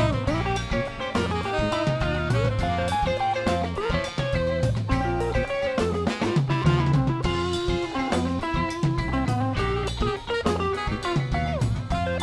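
Live band playing an instrumental passage: electric guitar lines with bends and slides over a full drum kit, the drummer keeping time on Zildjian cymbals and drums.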